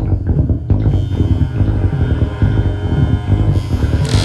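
Experimental electronic synthesizer music with a heavy, pulsing low bass line; a brighter hissing layer comes in near the end.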